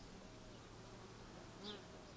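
Faint buzzing of honeybees flying close by, the drone of single bees coming and going.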